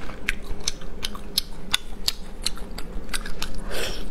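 Close-miked chewing of braised intestine, with many short, wet, sticky mouth clicks a few times a second and a bite near the end.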